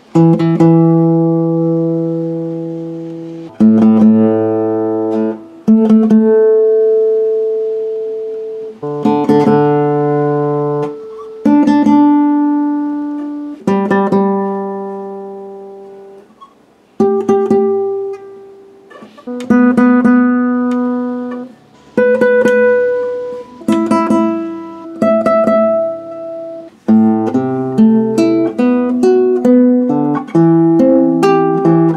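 Almansa nylon-string classical guitar, its strings plucked one note at a time: each open string, then its 12th-fret octave, to check the intonation of a newly compensated saddle. Each note rings for a couple of seconds and dies away, with quicker notes near the end. The guitar now plays in tune.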